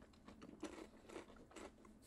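Faint crunching of a person chewing a peanut butter-filled pretzel: a few soft, separate crunches.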